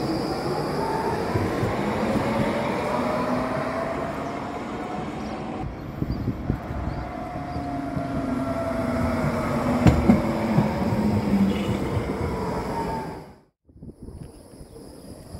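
Low-floor electric trams passing on street track: motor whine that glides up and down in pitch over a steady rolling rumble, with a sharp knock about ten seconds in. The falling whine near the end comes as the tram slows into the stop.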